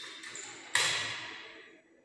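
Paper tissue pulled from a tissue box: a click, then a louder sudden rustle about three quarters of a second in that fades away over about a second.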